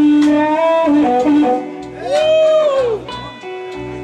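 Live blues band playing a slow blues, with amplified harmonica cupped to a vocal microphone and electric guitar. A long held note gives way to a run of shorter notes, and one note is bent up and back down about two seconds in.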